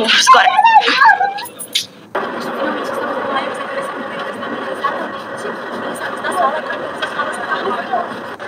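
A voice from a TV news clip played on a tablet and picked up by the microphone. About two seconds in it cuts off abruptly to a steady background hubbub with a faint voice under it.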